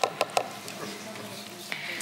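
A plastic tub knocks a few quick times against a plastic mixing bowl as coconut flour is emptied out of it, in the first half second. Faint stirring of the dry flour mixture follows.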